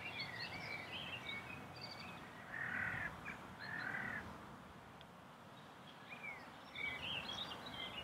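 Two harsh caws from a crow-family bird, about a second apart, a little under three seconds in. Small songbirds chirp and twitter around them, thinning out in the middle and picking up again near the end.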